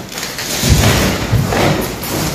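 A man in a plate carrier settling prone on a hard floor behind a rifle on its bipod: rustling of clothing and gear with several dull thumps.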